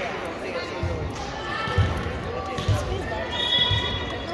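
A volleyball bounced on a hardwood gym floor, four dull thuds about a second apart, with voices echoing around the hall.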